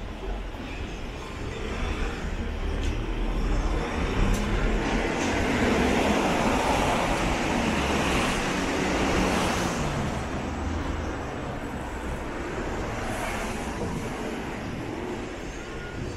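Street traffic: a road vehicle passes close by, its noise swelling over several seconds and fading again, over a low rumble.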